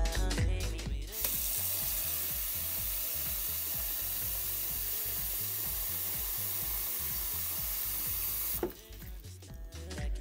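Bathroom faucet running a steady stream of water into a plastic tub for about seven seconds before it stops. Music with a beat plays for about the first second.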